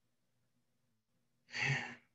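A short sigh from a person, about one and a half seconds in, after a pause filled only by a faint low hum.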